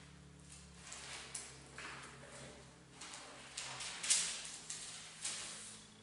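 Bible pages rustling as they are leafed through: a handful of short, soft paper rustles, the loudest about four seconds in, over a faint steady low room hum.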